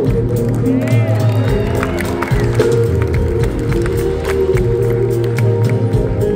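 Live rock band playing on stage, heard from the audience: sustained keyboard chords, electric guitar, bass and a steady drum beat, with no lead vocal. Voices from the crowd are mixed in.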